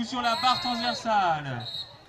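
A man speaking, with a high steady whistle tone under the talk and a short whistle blast near the end: the referee whistling for a foul.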